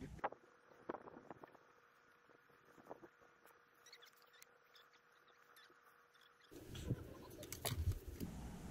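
Faint clicks and taps of small camping gear being handled. Near the end comes louder rustling of tent fabric and bedding, with a few knocks, as someone moves and sits down on the tent floor.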